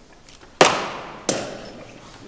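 Two sharp, loud knocks about 0.7 s apart, the first the louder, each ringing out in the church's long reverberation.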